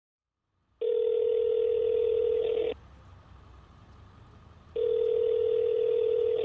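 Telephone ringback tone heard down the line: a steady tone lasting about two seconds, a two-second pause, then a second tone, as an outgoing call rings at the other end.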